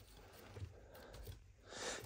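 Mostly near silence, with a faint breath drawn near the end.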